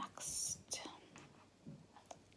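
A short whispered, breathy hiss, followed by a faint click, then quiet.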